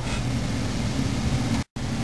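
A steady low hum with hiss from the pipe organ's blower and wind supply, with no pipes speaking. It cuts out completely for an instant near the end.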